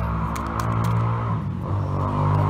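A steady low mechanical hum, like a motor or engine running, its pitch shifting about three-quarters of the way through, with a few light clicks over it.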